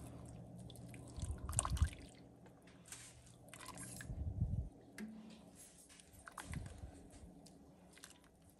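A silicone spatula stirring a pot of braising liquid: faint, irregular sloshing with soft knocks and scrapes against the pot.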